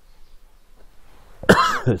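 A man coughs once, loudly, about one and a half seconds in, after a quiet pause.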